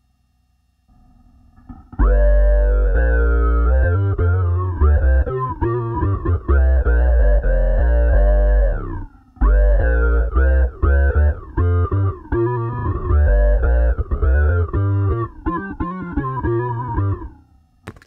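Six-string electric bass played through an envelope filter stacked with an octaver and a Big Muff-style distortion emulation on a multi-effects unit. Each note's tone sweeps up as the filter opens. The riff starts about two seconds in, breaks briefly around the middle and stops just before the end.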